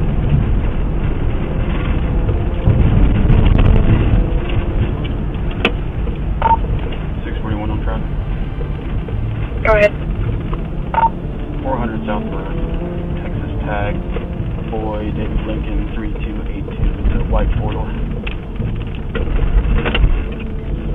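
Steady engine and road rumble inside a moving patrol car, under muffled, unintelligible police radio chatter. Two short beeps come about six and eleven seconds in.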